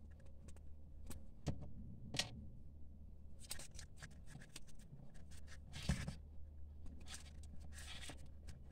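Paper raffia yarn rustling and crackling as it is worked with a crochet hook in single crochet, with scattered small clicks and a few sharper ticks.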